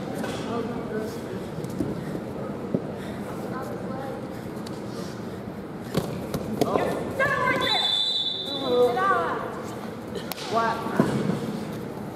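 Wrestlers' bodies thudding onto the gym mat in a takedown about halfway through, with a second thud later, amid shouting from spectators in an echoing gym.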